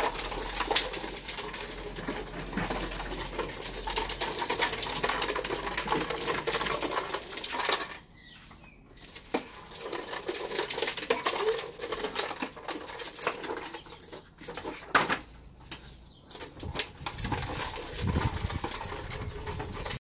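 A child's plastic tricycle's hard wheels rattling and grinding over paving slabs, steady for about eight seconds, then stopping and starting.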